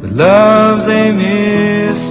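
Pop ballad music: a male voice slides up into one long held note and sustains it, over a soft accompaniment.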